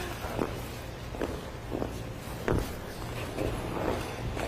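Figure skate blades on rink ice as a skater pushes off and glides, a short scrape with each of about four strokes, over a steady low hum.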